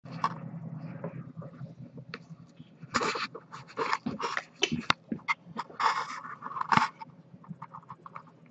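Great Dane breathing close to the microphone: a run of short, noisy breaths from about three to seven seconds in, mixed with a few clicks as the phone is moved.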